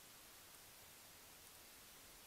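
Near silence: a faint, steady hiss from a trail camera's recording.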